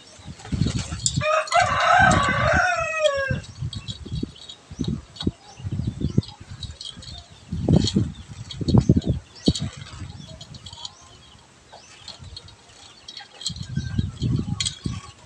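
A rooster crows once, a single call of about two seconds starting a second in and dropping in pitch at its end. Around it, low knocks and handling noise from a metal scissor-arm microphone stand being fitted and its clamp tightened onto a wooden table.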